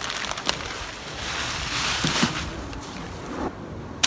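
Vermiculite granules pouring out of a bag into a plastic tub: a steady rushing hiss that swells in the middle and eases toward the end, with a sharp tick about half a second in.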